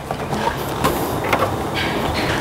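Makita electric drill running steadily, with a few short clicks.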